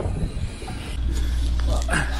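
Sailing yacht's inboard engine idling: a steady low hum that comes in about a second in.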